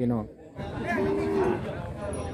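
A cow mooing once, a short held call about a second in, over the chatter of a busy livestock market.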